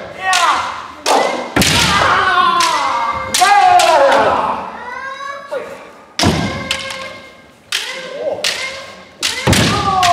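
Kendo sparring: both players give repeated long kiai shouts that fall in pitch, among sharp cracks of bamboo shinai striking armour and the thud of stamping feet on a wooden gym floor.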